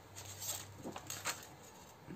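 Faint handling noise from a clear plastic stamp sheet and its packet being picked up: a few soft, scattered ticks and rustles.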